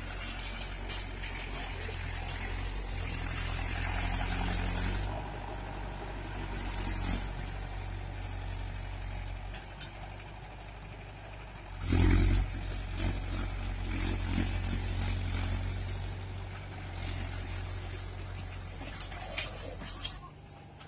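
Farm tractor's diesel engine running under load while driving a rear-mounted rotary tiller through grassy soil, its level rising and falling as it passes. About twelve seconds in there is one sudden loud burst.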